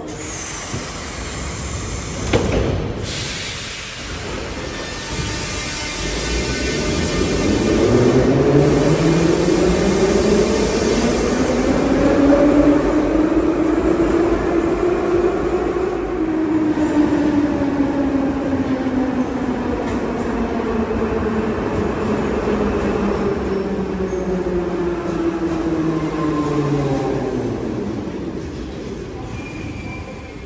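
Metro trains at a station platform. A short sharp knock about two and a half seconds in, then a departing train's traction motor whine climbs in pitch as it pulls away. The whine then falls in pitch near the end as the next train brakes into the platform.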